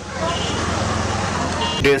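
Steady outdoor background noise: an even hiss over a constant low hum, with faint voices in it. It stops about two seconds in as a man's voice starts.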